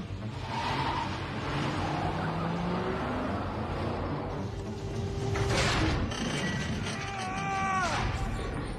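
Film soundtrack: tense background music mixed with a car driving, with a swell about five and a half seconds in and a falling high tone near the end.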